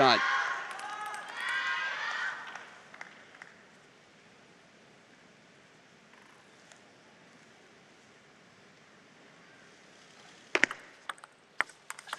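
Voices from the arena crowd for the first couple of seconds, then a quiet hall. About ten and a half seconds in, a serve and rally begin: a plastic table tennis ball clicks sharply off rubber-faced paddles and the table, about half a dozen hits in quick succession.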